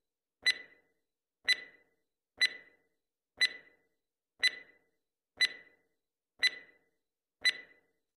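Countdown timer sound effect: a clock ticking once a second, eight sharp ticks with silence between them.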